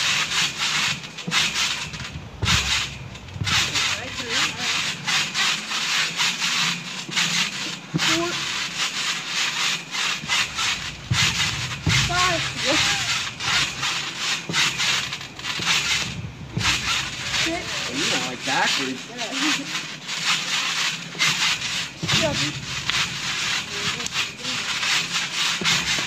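Backyard trampoline's springs and mat rasping and creaking under repeated bouncing and flipping, the noise rising and falling over and over.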